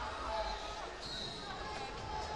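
Large-hall background: faint distant voices echoing and some low thuds.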